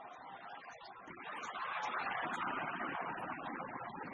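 Arena crowd cheering through a badminton rally, the noise swelling to a peak about halfway through and staying loud.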